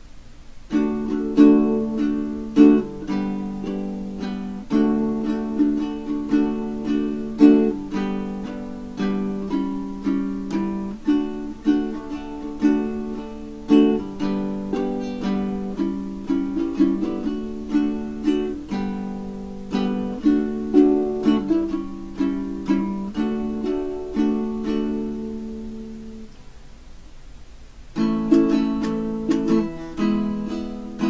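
A baritone ukulele with Worth Brown strings in linear DGBE tuning (low D string), playing a run of strummed chords. About 25 seconds in the chords stop and ring out, and the strumming starts again near the end.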